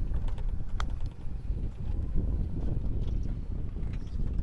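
Wind buffeting the microphone as a steady low rumble, with one light sharp click a little under a second in: a wedge striking a golf ball on a short chip shot.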